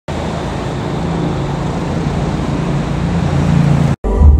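Steady city road-traffic noise, an even wash of passing vehicles with a faint low hum, cutting off suddenly just before the end.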